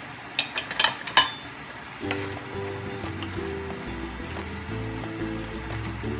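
Vegetables sizzling in a nonstick wok, with a quick run of sharp knocks and clinks of a utensil against the pan in the first second or so. Background music comes in about two seconds in.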